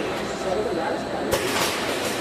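Automatic packaging machinery running with a steady mechanical clatter, and a single sharp clack about a second and a half in.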